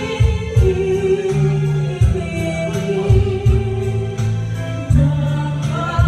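A woman singing a slow ballad into a microphone over a backing track with bass and a steady drum beat, holding long, wavering notes.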